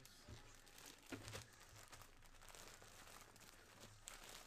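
Faint crinkling of a clear plastic bag as the jersey inside it is handled, with a few sharper crackles about a second in.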